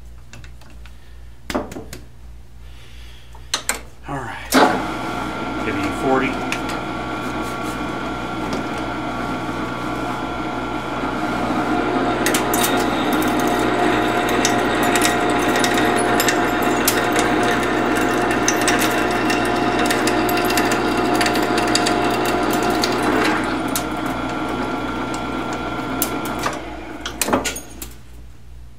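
A metal lathe starts after a few knocks and runs with a steady whine from its gears while a three-quarter-inch drill bit is fed from the tailstock into the spinning aluminium workpiece. The sound is louder for about ten seconds in the middle, while the bit cuts, then eases off before the lathe is shut off near the end.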